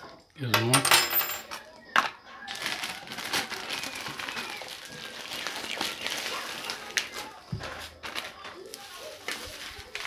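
Plastic bubble wrap crinkling and rustling as it is handled and pulled off a packaged item, with a sharp click about two seconds in.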